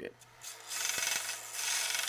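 Central Machinery 1x30 belt sander grinding a workpiece held against the belt on its platen: a steady abrasive hiss that comes in about half a second in, over a low motor hum.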